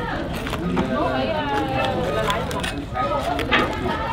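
Cleaver knocks as boiled pork leg is cut and deboned on a chopping board, a few sharp strikes with the loudest near the end. Voices talking in the background.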